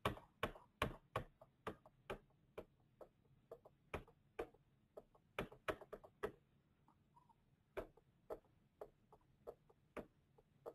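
Sharp clicks from a computer's keys and mouse being worked, about two a second, uneven in spacing and loudness, with a pause of about a second past the middle.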